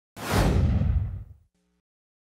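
Transition whoosh sound effect: a sudden swoosh with a deep rumble under it, the hiss fading first and the whole sound dying away after about a second and a half.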